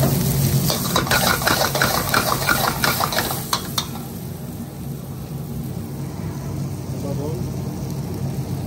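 Diced onion and peppers sizzling in hot oil in a wok while a metal ladle stirs them, scraping and clacking against the pan for the first four seconds or so. After that the stirring stops and a quieter steady sizzle continues over a low hum.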